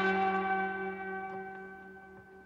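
The last chord of a live band's song on amplified plucked strings, including an electric saz, ringing out and fading steadily away after the final hits.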